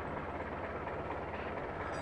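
A steady low hum with light background noise and no distinct events.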